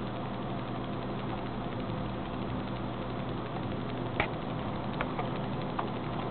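Desktop PC's cooling fans humming steadily, with a few faint keyboard key clicks as the BIOS menu is scrolled.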